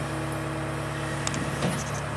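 Diesel engine of a Terex PT110 compact track loader running at a steady speed, an even hum with a held tone, with a couple of faint clicks in the second half.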